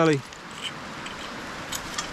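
A spade digging into loose dump soil: a steady scraping hiss with a few faint, light clinks of glass or pottery shards. A man's word ends just as it starts.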